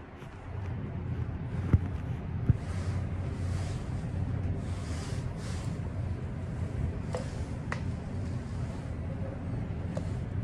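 Otis scenic glass elevator car travelling upward: a steady low hum of the moving car, with a few faint clicks along the way.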